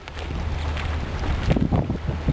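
Wind buffeting the microphone over a low steady rumble, with a stronger gust about one and a half seconds in.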